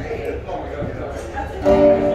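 Nylon-string classical guitar played in a song's intro: softer picked notes, then a fuller chord rings out near the end.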